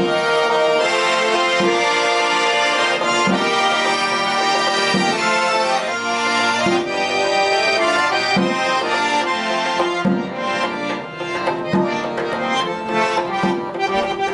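Piano accordion playing a tune in full chords over a regular bass beat; about ten seconds in, the playing turns to short, detached chords.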